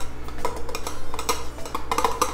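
A small plastic container tapping and clinking against the rim of a glass Ball mason jar in quick, irregular knocks, several a second, as it is shaken to knock snails stuck inside it loose into the jar.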